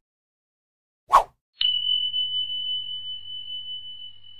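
Outro sound effect: a short swish about a second in, then a bright electronic ding that rings on as one steady high tone, slowly fading.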